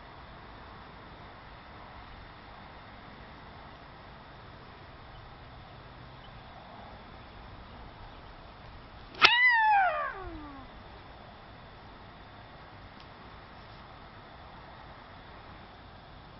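A woman's loud tennis-style scream let out on the downswing of a nine-iron golf shot, starting about nine seconds in with the click of the club striking the ball and falling steeply in pitch as it fades over about a second and a half.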